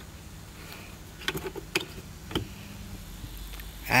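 Light clicks and taps from handling a car's carpeted cargo floor panel and its freshly removed lock cylinder: a cluster a little over a second in and one more past the middle, over a steady low hum.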